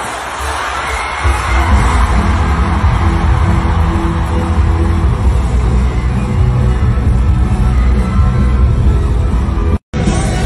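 Stadium crowd cheering while loud music plays over the PA, its heavy bass coming in about a second in. The sound drops out abruptly for an instant just before the end.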